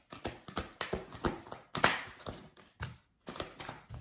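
Tarot cards being shuffled and handled: a quick, irregular run of taps and snaps, loudest a little under two seconds in, with a brief pause near the end before a few more.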